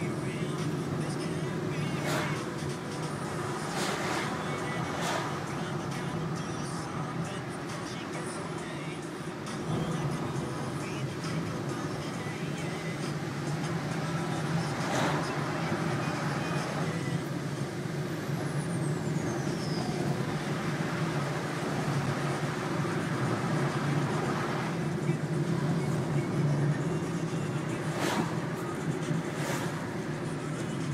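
Steady engine hum and road noise heard inside a moving car, with a few brief knocks.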